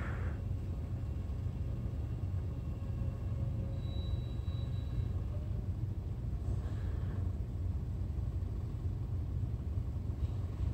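A steady low rumble with no speech, plus a faint short high tone about four seconds in.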